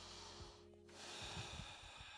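A person breathing hard through the exertion of a seated wide-leg hip-rotation stretch, quiet and close to the microphone: one breath, a short pause just under a second in, then another.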